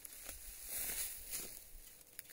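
Faint, soft footsteps and rustling in dead dry grass, a few light steps spread through the moment.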